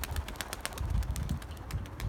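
Wingbeats of a young tumbler pigeon flying off, a fast run of soft flaps that fades away, over a low rumble of wind on the microphone.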